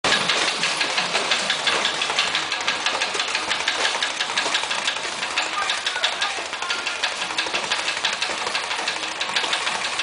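Speed bag being punched with boxing gloves: a fast, steady rattle of knocks as the bag rebounds off its platform, several strikes a second.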